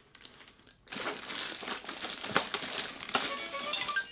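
A thin plastic bag crinkling as a bagged toy is handled, starting about a second in. In the last second a battery-powered toy begins playing short electronic tones.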